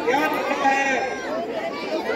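Speech only: people talking, with several voices overlapping.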